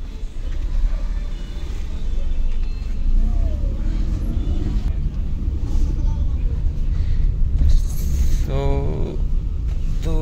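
Steady low rumble of engine and road noise inside the cabin of a moving Maruti Suzuki Alto 800.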